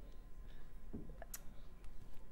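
A quiet pause in which a few faint, sharp clicks sound in the second half.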